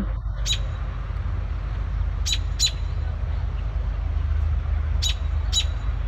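An adult female American robin giving short, sharp alarm calls, five notes mostly in pairs: urgent, angry scolding at an intruder near her nest of young, over a steady low rumble.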